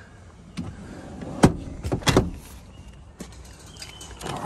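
Several sharp knocks and clicks of a small hatchback's interior fittings being handled, the loudest about a second and a half in and two more close together around two seconds.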